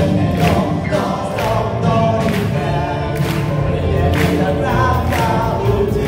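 Student rock band playing live: a male lead vocal sung over electric guitars, bass and drums, with a drum hit landing about once a second.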